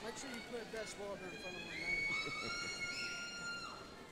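Voices in the audience, then one high call held for about two seconds: a cheer from the crowd for a graduate crossing the stage.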